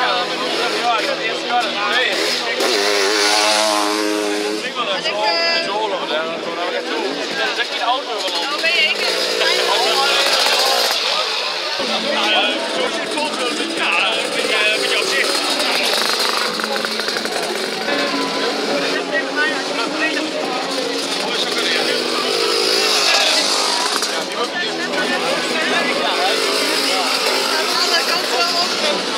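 Sidecar motocross outfits' engines running and revving up and down as they ride past, with voices mixed in.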